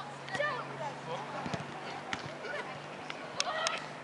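Footballs being kicked on an artificial-turf pitch: a few sharp thuds, two in quick succession near the end, with distant voices of players calling.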